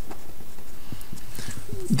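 Felt-tip marker writing a word on paper: faint, irregular scratching strokes.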